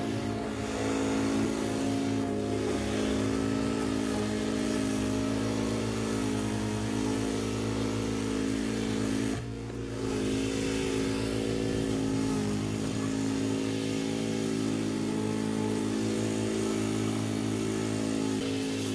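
Petrol push lawn mower engine running steadily at a constant governed speed while mowing long grass, with a brief dip in the sound about halfway through.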